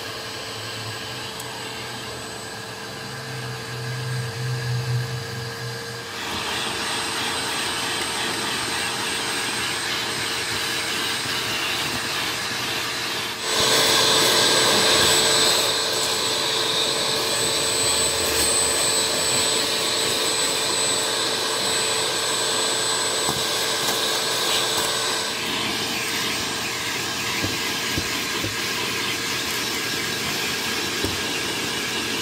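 Shop-Vac wet/dry vacuum running steadily, sucking dog hair out of car floor carpet through its hose and narrow nozzle, with a steady whine over the rush of air. About 13 seconds in it gets suddenly louder and harsher as the nozzle works into the carpet.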